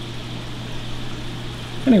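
Steady rush of water with a low, even hum, typical of a large aquarium's pump and filtration running.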